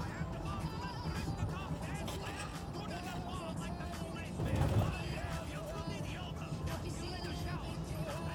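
A man rapping over a beat with a heavy bass line; a louder low boom rises briefly about halfway through.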